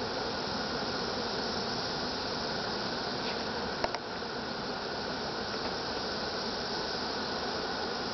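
Steady, dense buzzing of a mass of honeybees flying around an open hive. A single sharp click sounds just before four seconds in.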